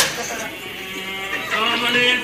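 A sharp click, then a person's voice held in long, drawn-out tones that grow louder in the second half.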